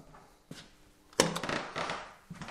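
Handling noise at a spindle moulder's metal fence: a faint click, then a sharp knock about a second in that trails off into a short rattle.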